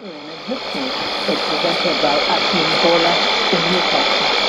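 Voice of Nigeria's English shortwave broadcast received on 15120 kHz AM through a Sony ICF-2001D's speaker: a weak, barely intelligible announcer's voice under steady static hiss. The signal drops out briefly right at the start and comes back within half a second.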